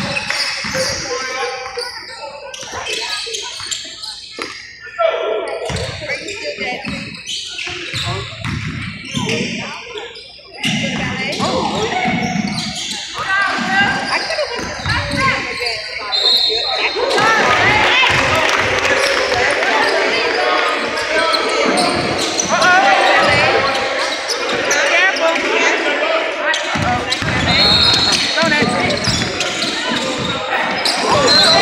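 A basketball bouncing on a hardwood gym floor during a game, with indistinct shouting and chatter from players and spectators echoing around a large gym. The voices become louder and busier about halfway through.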